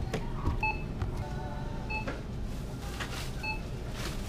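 Checkout barcode scanner beeping three times, about every second and a half, as groceries are scanned, with items being handled over steady store background noise.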